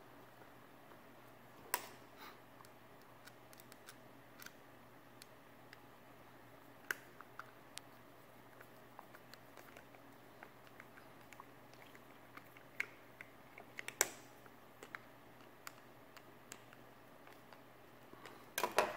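Small, scattered clicks and ticks of a screwdriver working a screw into a plastic plug housing and of the plug being handled, with two louder clicks, one about two seconds in and one about fourteen seconds in.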